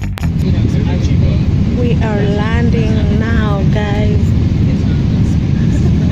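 Steady low rumble of airliner cabin noise in flight. A voice speaks in the cabin for about two seconds in the middle.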